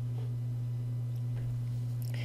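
A steady low electrical hum, one constant tone with a fainter overtone above it, over quiet room tone.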